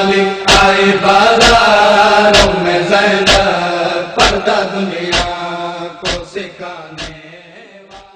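Noha lament chanted to a steady beat of sharp strikes about once a second. It fades out over the last few seconds, the beat stopping about seven seconds in.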